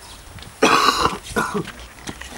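A person coughing close by: one loud cough about half a second in, then a shorter second cough.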